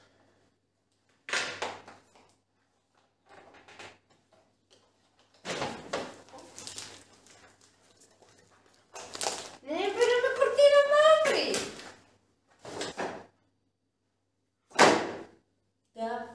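A long cardboard curtain-rod box being opened and unpacked on a table: scattered knocks, thunks and rustles with quiet gaps between them. About nine seconds in, a voice makes a long drawn-out sound that rises in pitch.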